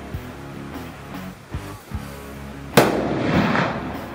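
A single .30-06 rifle shot from a Sako 85 Finnlight, about three-quarters of the way through, trailing off over about a second. Background music runs under it.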